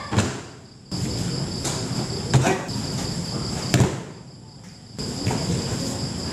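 Judo throws landing on a foam mat: several sharp slaps of bodies hitting the mat in breakfalls, the loudest two about two and a half and almost four seconds in. Crickets chirr steadily and high-pitched behind them.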